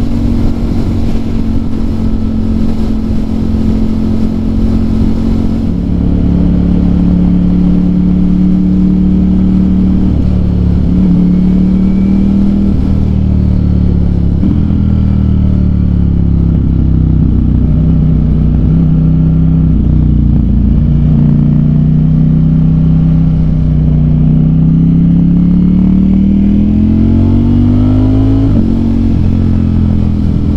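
Ducati Streetfighter V4S's 1103 cc V4 engine heard from the rider's seat. Its note is steady at cruise, then steps down several times and falls as the bike slows, then rises steadily as it accelerates, with a gear change near the end. Wind noise rushes over the microphone for the first six seconds or so.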